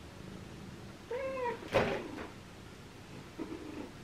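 A Sphynx cat gives one short meow, its pitch rising and falling, about a second in, followed right after by a sharp knock that is the loudest sound.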